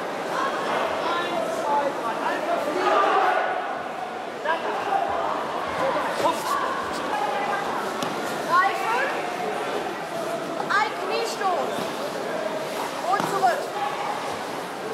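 Indistinct voices of many people talking at once in a large hall, a steady chatter with no one voice standing out.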